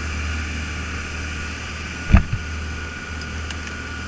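Motorboat engines running steadily under way, a low hum with the rush of the wake. A single sharp knock about halfway through as the fish cooler is handled.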